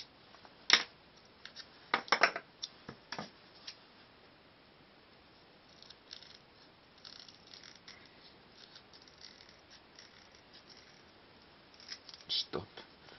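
A few sharp knocks and clicks of small workshop pieces being handled in the first few seconds. From about six seconds in come faint, repeated snips of scissors cutting a thin strip.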